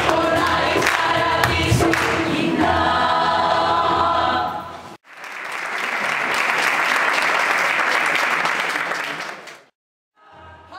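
A choir singing with low beats underneath, stopping about halfway through. The audience then applauds, and the clapping fades out just before the end.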